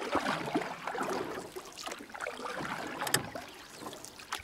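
Irregular splashing, rushing noise like moving water, with a sharp click about three seconds in.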